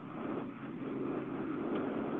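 Steady background noise of the meeting's audio feed: an even hiss and hum with no distinct events.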